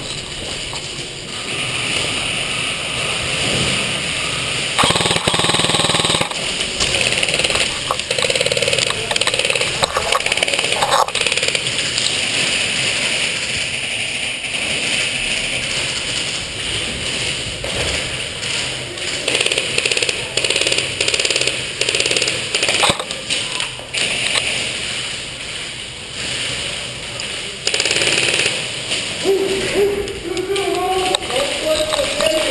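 Rapid volleys of shots from recreational skirmish guns, popping in quick strings throughout, with louder bursts of firing about five seconds in, around twenty seconds and near the end.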